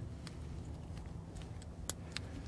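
Small metal handling clicks as a brake pad wear indicator clip is fitted onto the back of a brake pad. A single sharp click near the end as the clip snaps into place.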